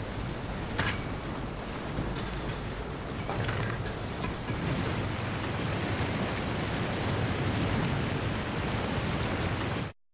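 Water rushing over a dam spillway, a dense steady hiss that grows a little louder about halfway through, with a few light clicks in the first few seconds. It cuts off suddenly at the very end.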